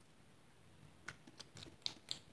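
Mostly quiet, then a few faint, light clicks in the second half: a spoon tapping and scraping in a plastic tray of mixture.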